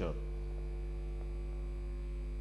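Steady electrical mains hum: a constant low buzz with its overtones, unchanging in pitch and level.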